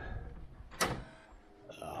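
Hotel room door giving a single sharp click a little before a second in, over faint room sounds. A man's voice starts right at the end.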